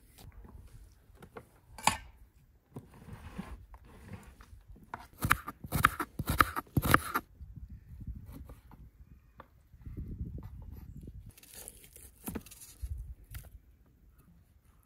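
Knife cutting raw beef on a wooden chopping board: scattered sharp knocks of the blade on the board, a quick run of them in the middle, with the softer sound of meat being handled.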